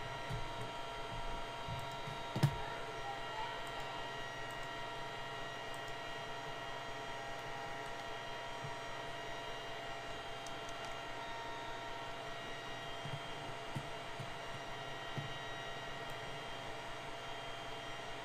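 Steady electrical hum with several faint steady tones, with a single sharp click about two and a half seconds in.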